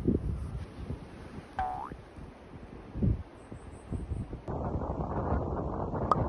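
Wind buffeting the microphone as a low rumble, which gets suddenly louder and fuller about four and a half seconds in. A brief rising squeak comes about a second and a half in.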